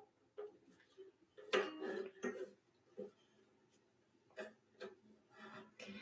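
Faint, scattered handling noises as a makeup brush is pressed across a ukulele's neck and strings as a makeshift capo: short knocks and rubs with brief string sounds, the busiest patch about a second and a half in.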